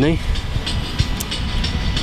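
Low, steady rumbling background noise, with a faint tick here and there; the tail of a spoken word is heard at the very start.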